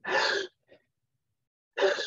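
A man imitating the gasping breathing of a dying person: two short, breathy gasps, one at the start and one near the end, with a pause between.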